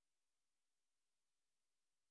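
Near silence: a muted audio feed with only a faint, steady hiss.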